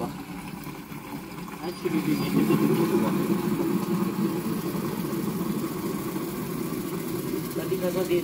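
A steady low engine-like rumble, as of a motor idling, that gets louder about two seconds in and then holds steady.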